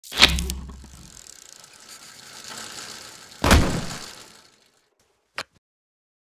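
Two heavy impact hits, the first at the very start with a deep rumble under it and the second about three and a half seconds in, each fading out with a hiss, followed by a single short click shortly before the end.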